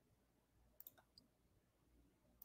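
Near silence with a few faint computer clicks close together about a second in.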